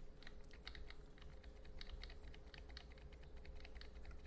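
Computer keyboard keys tapped in a quick, irregular run of faint clicks, about five a second, over a faint steady hum.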